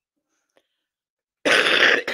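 Near silence, then a loud cough about one and a half seconds in, the first of a short run of coughs.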